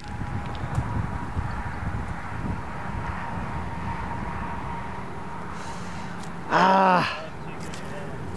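Steady outdoor background noise, then about six and a half seconds in a person's voice calls out briefly, a single held word lasting about half a second.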